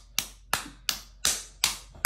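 A baby clapping her hands in an even rhythm, six claps at about three a second.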